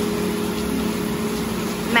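Restaurant room noise: a steady hum with held low tones, under faint background voices.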